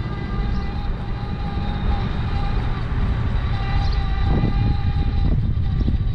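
Wind rumbling on the camera microphone while riding a seated electric scooter, with a faint steady whine that shifts slightly in pitch over it.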